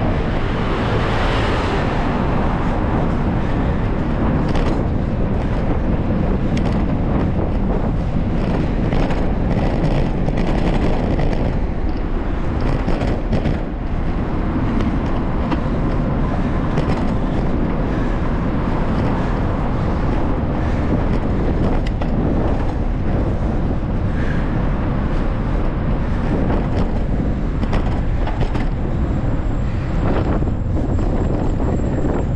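Riding noise of a bicycle on rough, cracked pavement, heard on the bike's camera: a steady rumble with wind buffeting the microphone and frequent small jolts and rattles.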